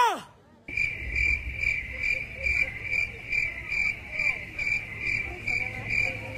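Cricket chirping in a steady, even pulse of about two and a half chirps a second. It starts abruptly after a brief silence, over faint background chatter. A short rising-and-falling vocal exclamation ends right at the start.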